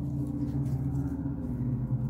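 A steady low-pitched hum.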